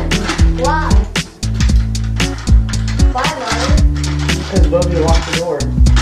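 Background music: a song with a vocal over deep, steady bass notes and a regular drum beat.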